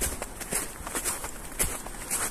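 Footsteps on a packed-snow path at a steady walking pace.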